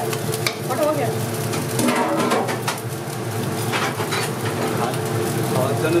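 Rice frying and sizzling in a large iron kadai, with a steel ladle scraping and clinking against the pan as the rice is stirred and tossed.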